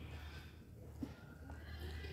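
Quiet chewing of food, with a couple of soft mouth or spoon clicks, over a low steady hum.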